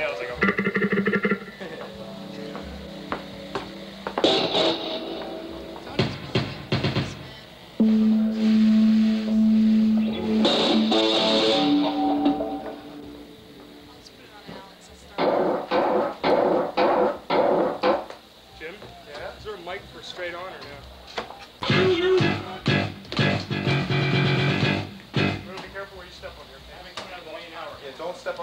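Amplified electric guitar and bass played in short stop-start bits through amps and effects, with some distorted tones and one long held low note about a third of the way in: instruments being tried out during a soundcheck.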